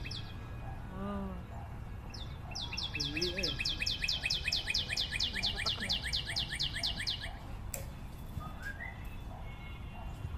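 A bird singing a fast run of repeated high, falling notes, about six a second, lasting about five seconds.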